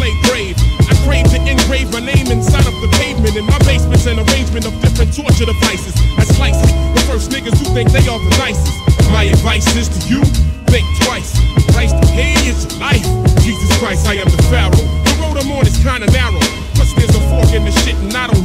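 A 1990s East Coast hip-hop track: rapping over a steady drum beat with a heavy, repeating bass line.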